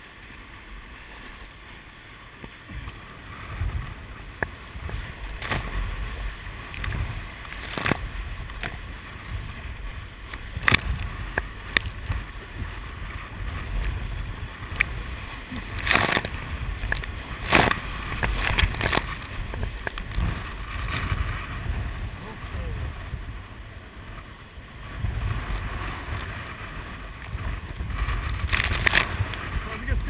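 A kayak running whitewater rapids: rushing water with a low rumble of wind and water on the microphone. Sharp splashes of waves breaking over the boat and against the camera, the loudest bunched about halfway through and again near the end.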